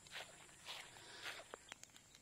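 Faint footsteps on grass, about two steps a second, followed by a few short, sharp clicks near the end.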